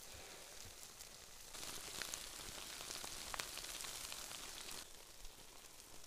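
Foil-wrapped food cooking on campfire coals, sizzling and hissing faintly, with a few small crackles; the hiss swells through the middle and eases off near the end.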